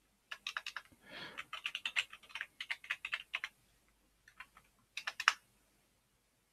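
Typing on a computer keyboard: a quick run of keystrokes for about three seconds, then a pause and a few more key presses near the end.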